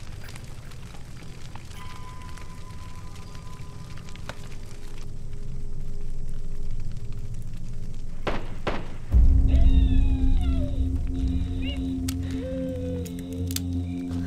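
Tense drama score with a sudden deep boom about nine seconds in, under which a cat meows in drawn-out, gliding cries twice toward the end.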